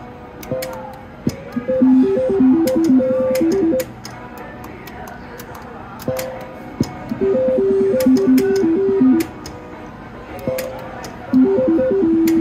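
Double Top Dollar reel slot machine spinning: three times a short electronic tune of stepping beeps plays for about two seconds while the reels spin, with sharp clicks in between.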